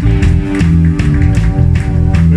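Live punk rock band playing: electric guitar chords held over bass and drums, with regular drum hits and no singing.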